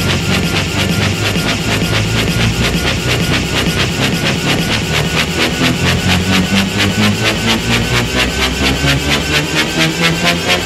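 Electro breakbeat dance track playing, with a regular driving beat and a bass line shifting between notes.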